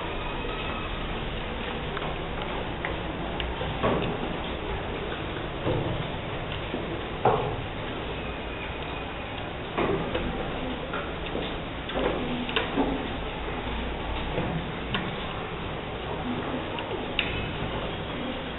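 Room noise in a classroom with a steady hiss, dotted with scattered short clicks and taps from pupils working at wooden desks with pencils and abacuses.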